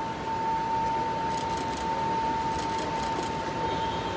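Steady background noise of a busy airport terminal entrance with a constant high-pitched tone, and a few faint clicks in the middle.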